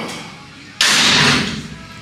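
A bench presser's forceful, breathy exhale as he pushes out a rep, starting abruptly about a second in and fading away within a second.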